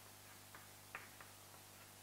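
Faint chalk on a blackboard while writing: a few light ticks, one about half a second in and two more around a second in, over a low steady hum.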